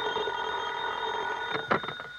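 Telephone bell ringing in a steady ring that stops about a second and a half in, followed by a brief clatter as the receiver is picked up.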